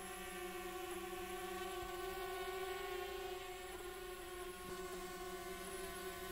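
DJI Spark quadcopter hovering and moving sideways under hand-gesture control, its propellers giving a steady buzzing whine.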